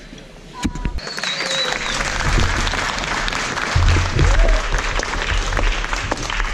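Crowd applauding, starting about a second in and holding steady, with a brief high whistle over it early on.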